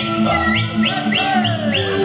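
Romanian folk dance music: a steady alternating bass-and-chord backing under a high lead melody that plays a quick run of short upward slides, about four a second.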